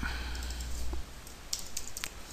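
Computer keyboard typing: a few separate keystrokes, mostly in the second half.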